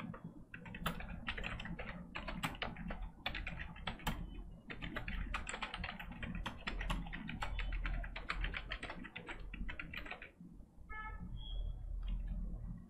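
Rapid typing on a computer keyboard, a quick run of key clicks that stops about ten seconds in, followed by a brief short squeak over a steady low hum.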